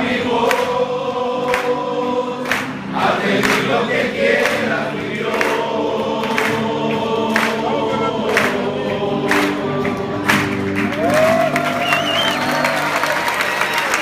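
A crowd of men singing together, unaccompanied, with sharp claps roughly once a second keeping the beat.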